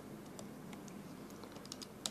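Faint light clicks and taps of a stylus on a writing pad and the keys of a hand-held calculator, coming quicker near the end.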